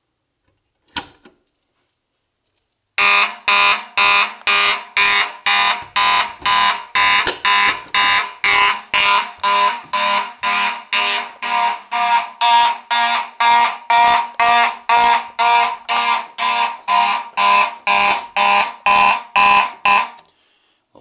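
A Simplex manual fire alarm pull station is pulled with a sharp click about a second in. About two seconds later two Simplex fire alarm horns start sounding in a steady pulse of about two blasts a second. They cut off near the end when the alarm is silenced at the control panel.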